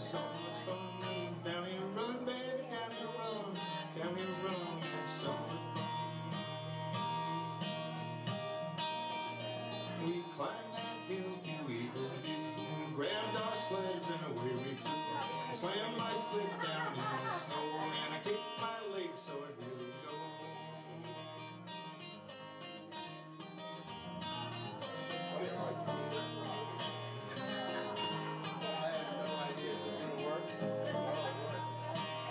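Live acoustic guitar music, played steadily, with a short dip in loudness about two-thirds of the way through.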